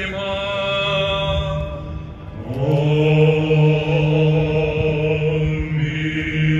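Greek Orthodox Byzantine chant: long, held sung notes over a steady low drone, with a new phrase swelling in about two and a half seconds in.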